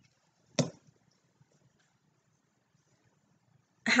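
One short, sharp knock of a cylinder base being set down on a granite table top about half a second in, followed by near silence.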